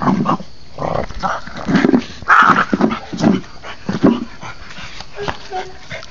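A French bulldog makes short throaty grunting noises about once a second while it pushes a metal bowl around on brick paving. Faint clicks and scrapes of the bowl on the brick come between them.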